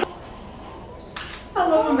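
DSLR camera shutter firing once a little over a second in, a short sharp snap taking a photo.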